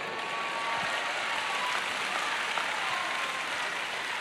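Church congregation applauding steadily, with a few voices calling out faintly above it.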